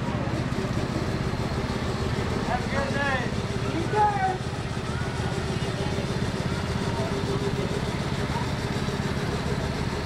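A vehicle engine running at a steady idle, a low even rumble throughout. Faint voices come over it around three to four seconds in.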